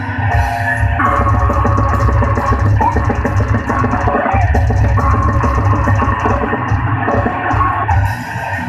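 Metal band playing live and loud: distorted electric guitar over fast, dense drumming on a full drum kit, heard from the crowd.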